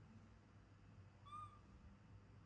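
Baby macaque giving a single short, high-pitched coo call about a second into a near-silent room, the pitch rising slightly and falling back.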